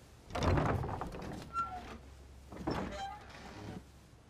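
Wooden lattice double doors being pushed open: two scraping sounds of about a second each with faint squeaks, the first the louder.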